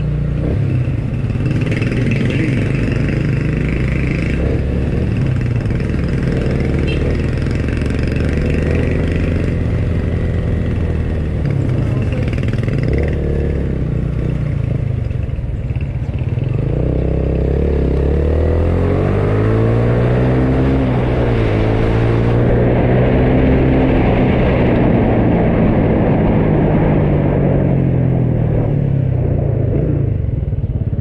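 Motorcycle engine running as it is ridden, its pitch rising and falling with speed: it climbs clearly a little past halfway, holds, then eases off near the end as the bike slows.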